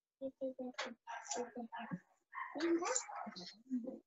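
A child's voice coming faintly over a video call in short, broken bursts of speech, too unclear for the words to come through.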